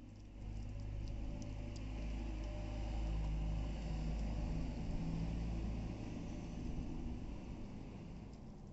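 A low, steady rumble swells about half a second in, is loudest in the middle and fades near the end. Over it, especially in the first seconds, come the faint clicks of a corgi puppy gnawing a raw chicken leg.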